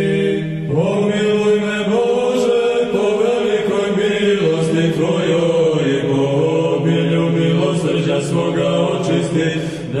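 Serbian Orthodox liturgical chant: voices sing a slow, gliding melody over a steady held drone note. There is a brief break about half a second in before the voices come back in.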